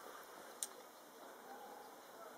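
Quiet background with a single short click a little over half a second in.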